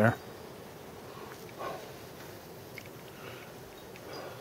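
Faint steady background hiss after a man's last word, with a brief faint sound about one and a half seconds in.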